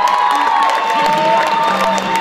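Audience cheering and clapping, with one long high-pitched cry held for most of it, over background music.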